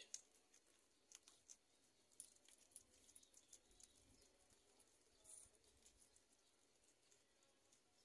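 Near silence, with faint, scattered crisp ticks of guinea pigs chewing leaves.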